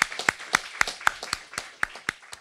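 Small audience applauding, individual hand claps distinct and irregular.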